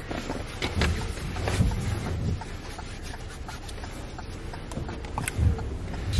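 Clothing rustling and rubbing against a hand-held camera microphone inside a car, with scattered small clicks and dull handling thumps over a steady low cabin rumble.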